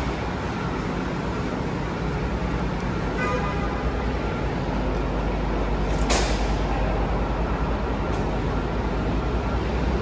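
Road traffic at a curbside: a steady low engine rumble that grows stronger about halfway through, with a brief tone a little after three seconds and a short sharp hiss about six seconds in.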